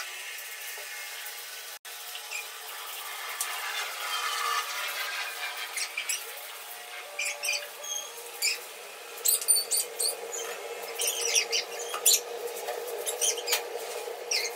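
Hand brooms sweeping a hard floor: a steady scratchy brushing, with quick sharp strokes coming thicker in the second half.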